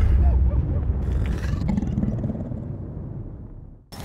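Deep, low rumble of a title-card sound effect, fading slowly and dying away near the end.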